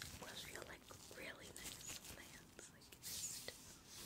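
Latex gloves rubbing and sliding against each other close to a microphone, with short squeaks that glide up and down in pitch in the first couple of seconds and a soft hissing rub about three seconds in.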